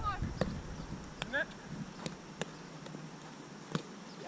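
Spikeball (roundnet) play: about five sharp slaps at uneven spacing as hands strike the small ball and it bounces off the net, with brief vocal calls near the start and about a second in.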